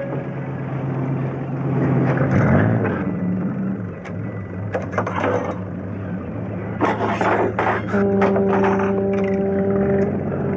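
Metal clanks and knocks from tools worked on a boat's inboard engine that won't run, over a low steady hum. A single knock comes about halfway through, then a quick run of knocks a little later. A steady held tone comes in near the end.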